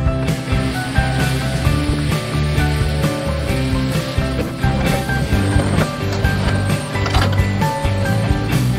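Background music mixed with the mechanical working noise of a Case CX250C hydraulic excavator digging into dirt and roots.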